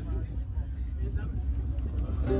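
Steady low rumble inside a descending aerial cable car cabin, with faint voices in the background.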